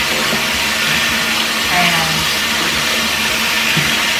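Bathroom faucet running steadily into a sink while soapy hands rinse and squeeze a makeup sponge under the stream.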